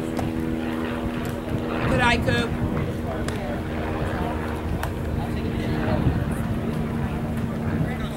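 Spectators' voices at a baseball field, with a loud rising shout about two seconds in, over a steady low mechanical drone. A few sharp clicks come later.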